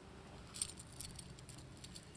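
Faint metallic jingling of a gold chain bracelet being lifted out of its jewelry box, a few light clinks about half a second to a second in.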